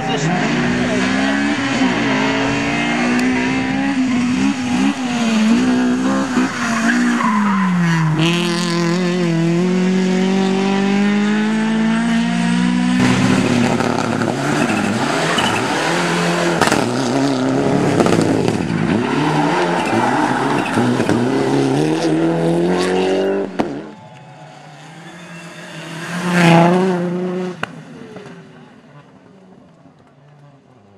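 Rally car engines at full effort on a tarmac stage, several cars in turn. The engine pitch drops about seven seconds in and then climbs steadily as a car accelerates. After a sudden drop in level near the end, another car passes more quietly, peaking briefly and fading away.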